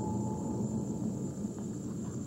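Low, steady rumbling noise, with a faint thin steady tone over it for about the first half second.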